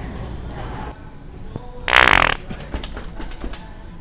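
Handheld fart-sound prank device (the original Sharter) squeezed once, giving a single loud, wet fart sound about half a second long, about two seconds in.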